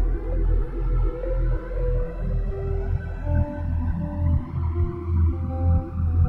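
Ambient electronic music played live on iPad synthesizer apps. Long held synth notes step to new pitches every second or so over a deep, pulsing bass.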